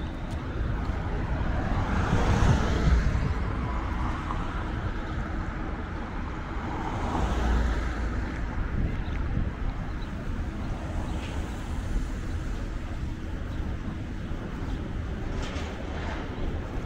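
City street traffic: a steady background of road noise with two vehicles passing, swelling up and fading away about two to three seconds in and again about seven to eight seconds in.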